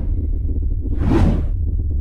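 Logo intro sound effect: a steady low rumble with a whoosh sweeping through about a second in.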